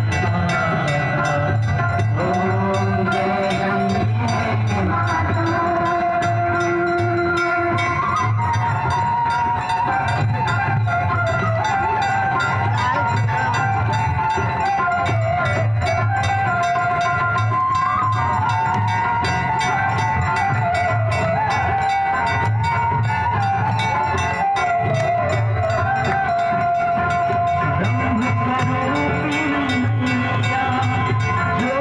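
Devotional Ganga aarti music: a wavering melody over a steady, regular drum beat, loud and continuous.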